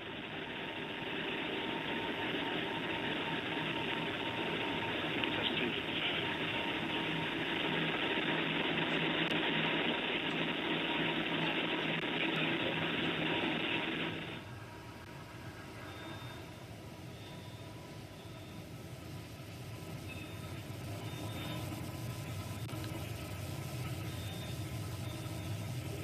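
New Shepard's BE-3PM rocket engine running during powered ascent: a steady, noisy rumble. About fourteen seconds in it drops suddenly in level and carries on quieter.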